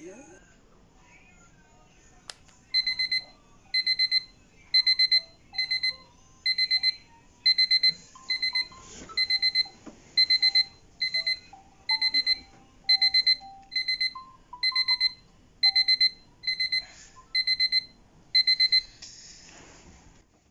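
Phone wake-up alarm beeping in short bursts of rapid high beeps, a little more than one burst a second, starting about three seconds in and stopping shortly before the end.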